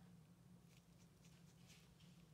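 Near silence: a faint steady low hum, with a few faint short scratches in the second half as a fine brush spreads glaze paste over a ceramic crown.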